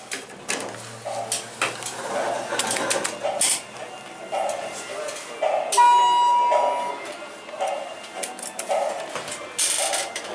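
One steady electronic beep about a second long, a little over halfway through, as the ThyssenKrupp hydraulic elevator's doors stand open at the floor: the car's arrival signal. Store background sound of voices or music runs underneath.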